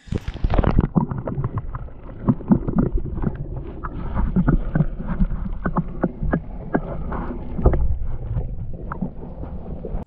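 Muffled low rumble and sloshing with many small knocks, heard through a camera underwater in a plastic bucket of water holding minnows as the bucket is jostled.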